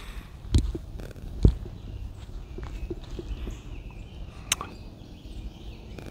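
Two low thumps about a second apart near the start, then a sharp click a little past four seconds in, over a quiet outdoor background. These are the sounds of someone shifting and stepping while holding the camera.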